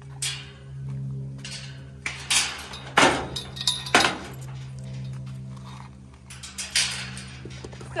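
Metal pipe-and-wire livestock gate being swung shut and latched: a few sharp metal clanks and clinks, the loudest about three and four seconds in, over a steady low hum.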